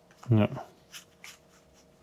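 Board-game cards being handled and slid against one another in the hands: a few faint soft clicks and rubs after a short spoken word.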